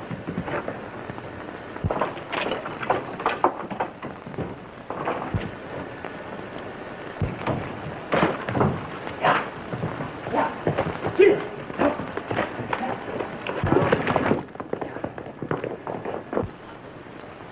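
Irregular sharp bangs and thuds, over a dozen, scattered over the steady hiss of an early sound-film soundtrack. They come thickest about halfway through and again near the end.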